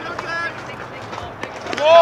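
Several voices shouting and calling out across a baseball field, with a loud drawn-out shout that rises and falls near the end.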